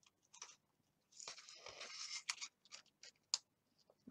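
Pliers and a thin cardboard strip being handled as a wire's end is pinched into the cardboard: a faint scraping and rustling from about a second in, with a few sharp clicks.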